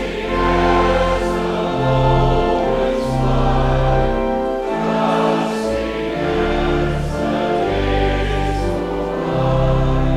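A group of voices singing a hymn with instrumental accompaniment, in long held chords over a steady deep bass that change every second or two.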